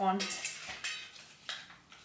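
A hand rummaging in a stainless steel bowl, scraping against the metal with a few sharp clicks as a folded slip is picked out.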